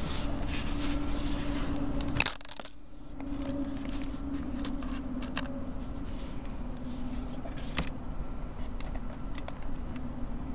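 The hard clear plastic box of an iPod Touch is handled and its lid lifted off: light scattered clicks and scrapes of plastic, with one sharp click about two seconds in. A steady low hum runs underneath.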